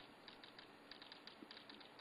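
Near silence: faint room tone with a few light, scattered clicks.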